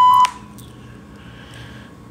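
A steady electronic beep on one pitch cuts off abruptly about a quarter second in. Quiet room tone follows.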